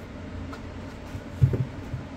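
Steady low room hum with light handling noise, and a brief low thump about one and a half seconds in as a cable and a portable monitor are moved on a desk.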